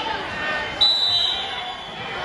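A wrestling referee's whistle blast about a second in, short and shrill, signalling the wrestlers to start from the referee's position, over spectators' shouting voices.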